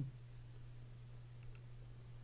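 A computer mouse click, one or two sharp ticks about three quarters of the way through, over a steady low hum.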